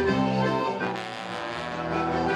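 Live ceilidh band playing a dance tune, the sustained notes and chords changing in steps, dipping briefly in loudness about a second in.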